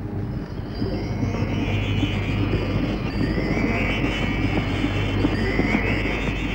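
Tense film background score: a dense, continuous low drone with higher tones that slide upward about halfway through and again near the end.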